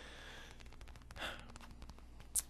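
A person's breath: a short, soft breathy rush about a second in, with faint clicks around it.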